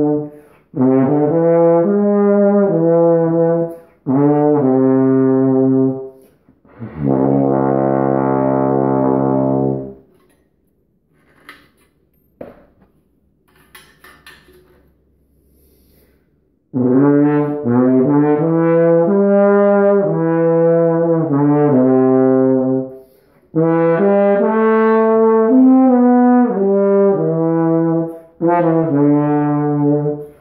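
A Carl Fischer ballad horn, a valved flugel-family brass instrument, played in phrases of sustained notes, with a long held note about seven seconds in. A pause of several seconds with only faint clicks follows, then playing resumes with further phrases.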